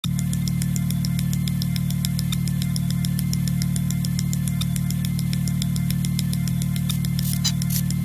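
Ambient music: a steady low drone with a fast, even ticking pulse over it.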